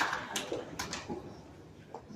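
Indoor bowls hall ambience, with a few sharp clicks and knocks in the first second before the background settles to a low, even hum.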